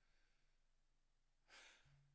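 Near silence: room tone, broken about one and a half seconds in by one short breath from a man at a pulpit microphone.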